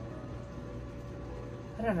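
A steady low mechanical hum with a faint hiss, like a small motor or fan running, and a woman starting to speak near the end.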